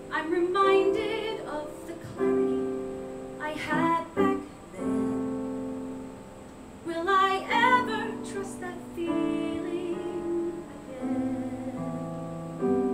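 A woman singing a musical theatre song with vibrato, in short phrases, over live piano accompaniment that sustains chords between her lines.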